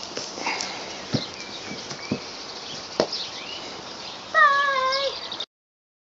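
Outdoor background with a few soft thumps. Near the end comes one drawn-out, high, wavering call, slightly falling and about a second long, like a meow. Then the sound cuts off suddenly.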